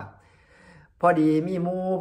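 A man speaking Thai, starting about a second in after a short quiet pause, his voice drawn out on a steady pitch.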